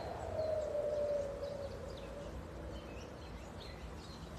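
A man's long audible breath out, a soft slightly falling tone lasting about two seconds, over low wind rumble on the microphone, with a few faint bird chirps.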